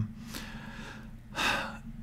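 A man draws a short, audible breath about one and a half seconds in, over a faint steady hiss of room tone.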